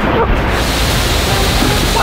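Water rushing and spraying in a water-slide flume as a rider slides down it, the spray right at the microphone: a loud, steady hiss.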